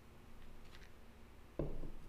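Quiet room tone with a few faint clicks, then a short low vocal sound from a man near the end.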